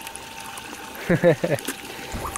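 Steady water trickling in a garden fish pond, with a brief burst of a man's voice about a second in.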